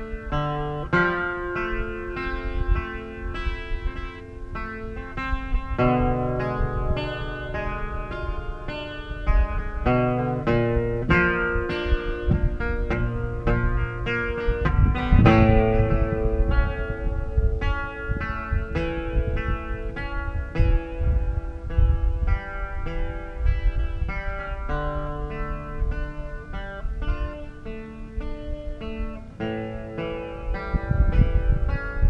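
Guitar played through an amplifier: an instrumental passage of picked notes and chords that change every second or two, with no singing.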